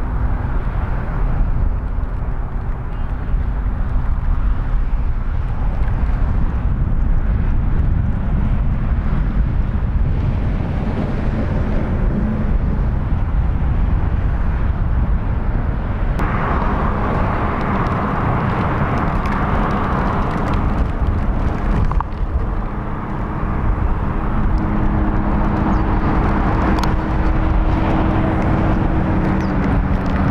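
Steady freeway traffic noise, a continuous low roar with a faint engine hum. The mix shifts about 16 and 22 seconds in.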